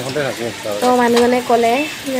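A woman's voice talking over a steady background hiss.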